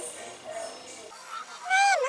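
A woman's short, high-pitched vocal exclamation with a falling pitch near the end, over faint background music.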